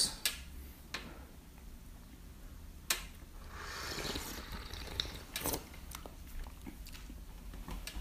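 Quiet sipping of tea from small cups: a soft drawn-in slurp swells about three to five seconds in, with a few faint light clicks around it.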